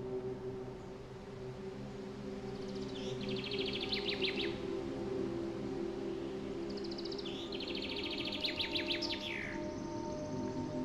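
Ambient music of sustained, held low tones, with a songbird singing two rapid trilled phrases over it, the first about three seconds in and the second near the end, finishing with a quick falling note.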